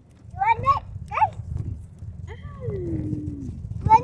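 Children's wordless voices: a few quick, high squealing calls, then a long falling 'ooh', and another call near the end, over a steady low rumble inside a car.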